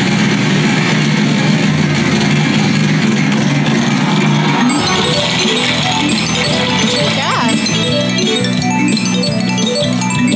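Slot machine bonus-wheel game sounds: electronic music while the wheel spins, then, about five seconds in, a win fanfare of rapidly repeating chimes as the machine counts up a 1500-credit wheel win.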